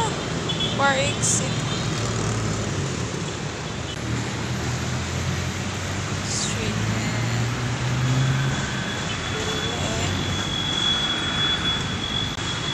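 Street traffic heard from above: the engines of jeepneys, cars and motorcycles run as a continuous low hum. A faint steady high tone joins in during the second half.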